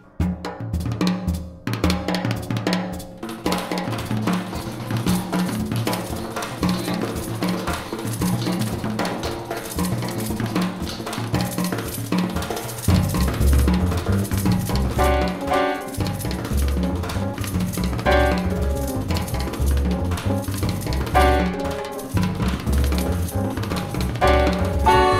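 Latin jazz band music led by percussion: hand drums and a drum kit with cymbals play a busy, continuous rhythm. A heavier bass part comes in a little past halfway.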